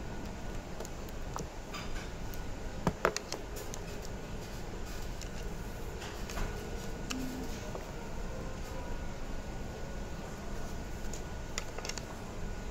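Light handling sounds of books and small objects on a table, a few soft clicks and knocks with the loudest about three seconds in, over steady room noise with a faint hum.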